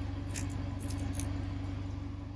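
BMW G20 3 Series engine idling steadily, with its exhaust valve held open by the unplugged controller: a low, even hum with a regular pulse. A few faint light ticks sound in the first half.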